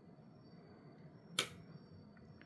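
A quiet room with a faint steady high-pitched whine, broken once, about one and a half seconds in, by a single short sharp hiss.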